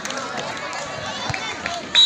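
Crowd of spectators and players talking and calling out at once, a mixed babble of voices with a few sharp clicks.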